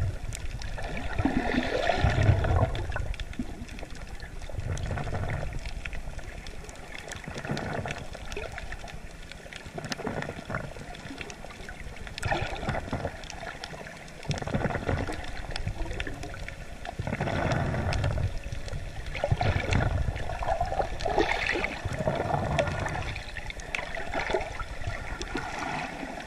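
Water gurgling and sloshing around an underwater camera, swelling and fading every two to three seconds.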